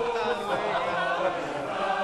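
A group of men's voices chanting or singing together, several held pitches overlapping.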